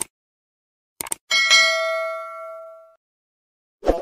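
Subscribe-button intro sound effect: a few quick clicks, then a single bright bell ding that rings out and fades over about a second and a half, with another short click near the end.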